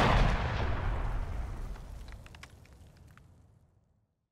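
The dying tail of a loud, explosion-like blast that strikes just before and cuts off the bowed-string music: a low rumble and hiss fading away over about three and a half seconds, with a few faint crackles in the middle of the fade.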